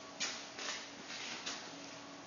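A faint steady hum broken by three short hissy rustles.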